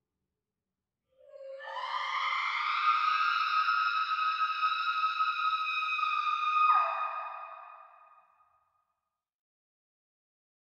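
A woman's long, high scream that starts about a second in, holds on one pitch, then drops lower and fades away.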